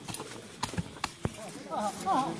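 About five sharp knocks at irregular spacing, then several voices talking over each other near the end.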